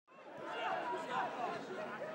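Quiet chatter of many voices from football spectators, fading in from silence over the first half second.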